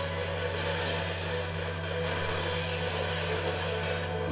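A steady low hum under a constant hiss, unchanging throughout, with no distinct events.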